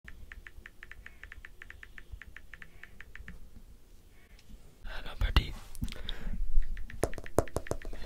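Light, even ticks, about six a second, from fingertip taps on a smartphone screen held close to a handheld microphone. From about five seconds in come louder close-up rustling, scratching and sharp clicks as the microphone is handled.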